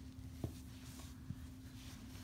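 Faint scratching of a dry-erase marker on a whiteboard in two short strokes, with a couple of light taps, over a steady low hum.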